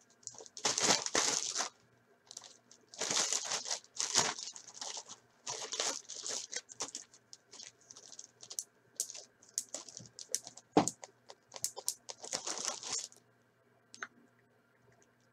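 Clear plastic bag crinkling in bursts as it is handled and pulled open by hand, with one sharp tap near the end.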